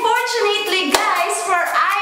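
A woman's excited, wordless voice sliding up and down in pitch, with a single hand clap about a second in.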